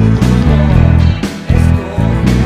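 Loud rock band music led by an Ernie Ball Music Man StingRay HH electric bass playing a line of heavy held low notes, with keyboards and sharp drum hits over it.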